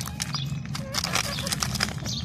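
Rabbits and a hen eating crunchy orange snack balls off a tray: quick, irregular crunching and pecking clicks over a steady low hum.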